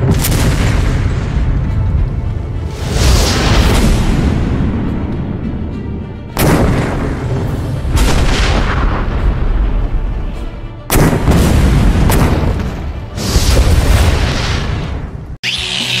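A field cannon firing again and again: about six loud booms, each followed by a long rolling rumble as it dies away.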